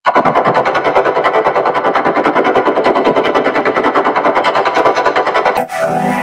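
Effects-processed logo audio chopped into a rapid, even stutter of about nine pulses a second. About five and a half seconds in it breaks off briefly and gives way to a steadier, synth-like processed sound with held tones.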